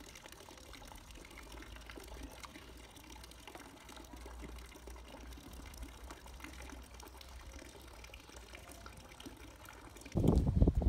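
Faint, steady splashing of a thin stream of water from a garden statue's fountain spout pouring into a swimming pool.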